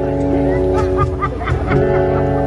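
Live acoustic band with an acoustic guitar and an electric bass ringing out held notes, and a run of hand slaps on a cajón in the middle.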